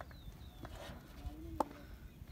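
A single sharp knock about one and a half seconds in as the delivered cricket ball is struck at the batsman's end, heard from a distance, with faint far-off shouts from players in the field.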